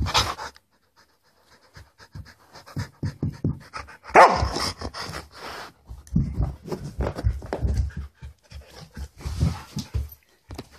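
Husky panting hard and scuffling as it paws under furniture while playing, with one louder drawn-out vocal sound about four seconds in.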